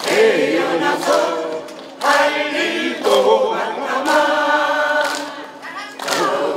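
A group of voices singing together in unison over a steady beat about once a second.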